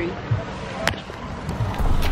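Steady outdoor background noise with a single sharp click about a second in, then background music with a heavy bass line coming in near the end.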